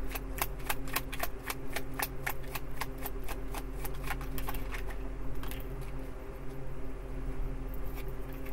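A tarot deck being shuffled in the hands: quick light card slaps, about four a second, that thin out to only a few after about four seconds.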